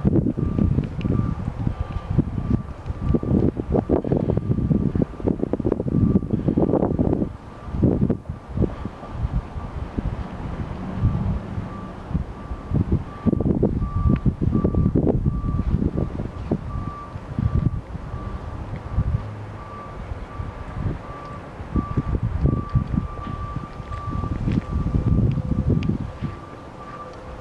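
A single-pitched electronic chime beeping steadily about once a second: a door-open warning chime from the pickup, whose doors stand open. Loud, gusty wind buffeting on the microphone covers it in waves.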